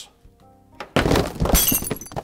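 Glass shattering about a second in: a sudden crash followed by bright tinkling of shards.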